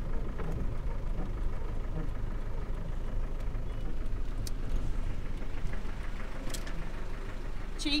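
Campervan engine running with a steady low drone as the van drives slowly onto a petrol station forecourt, heard from inside the cab.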